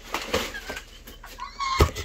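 Cardboard and plastic packing rustling as a battered mail box is opened, then a single sharp thump near the end.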